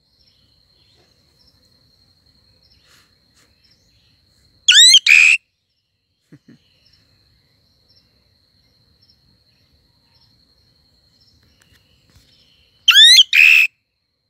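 A black-and-yellow songbird perched right by the microphone gives two short, loud whistled song phrases of quick rising notes, about five seconds in and again near the end. Between them a faint, steady high-pitched hum.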